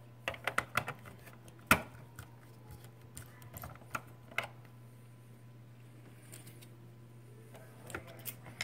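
Faint scattered clicks and taps of a hand screwdriver turning small screws into a plastic cover box, with the sharpest click a little under two seconds in. A low steady hum lies underneath.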